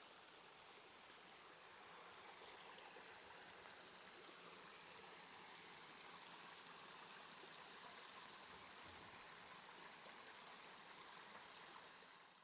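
Near silence: a faint, steady hiss of outdoor forest ambience.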